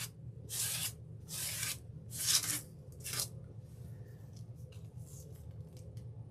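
Hand brushing spilled glass bead gel off a paper-covered work table: four short rasping strokes in the first three seconds, then fainter rubbing.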